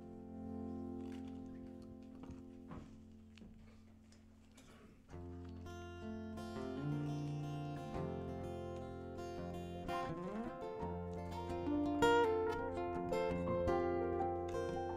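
Solo guitar playing a song intro: a chord rings out and slowly fades, then picked notes and chords come in louder about five seconds in, growing busier toward the end.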